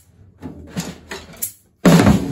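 Drum kit: a few light taps on the drums, then near the end a loud stick stroke on a tom that rings on.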